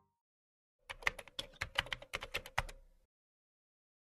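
Computer keyboard typing sound effect: a quick run of over a dozen key clicks lasting about two seconds, starting about a second in.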